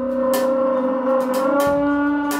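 Small jazz group playing: two horns hold long, sustained notes, one bending slightly upward partway through, while the drummer strikes cymbals several times and the double bass plays underneath.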